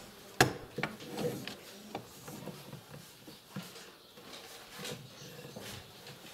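Scattered small clicks and knocks with faint rustling from people writing at tables, the sharpest knock about half a second in, over a low room hum.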